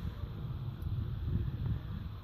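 Low, uneven rumble of wind on the microphone, with no distinct event.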